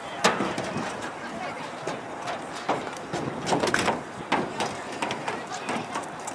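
Indistinct chatter of nearby people, with scattered sharp clicks and knocks.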